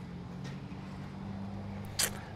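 Steady low background hum with no distinct events, only a couple of faint ticks.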